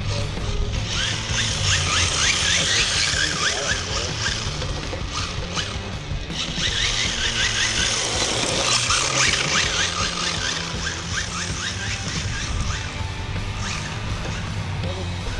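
Electric RC drift car's tyres sliding on asphalt with its motor whining, hissing and chirping in two spells, about a second in and again past the middle. Steady music plays underneath.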